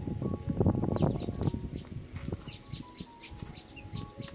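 Crisp garlic-butter toasted baguette cracking and crunching as it is broken apart and bitten, loudest in the first second and a half. Soft background music plays underneath.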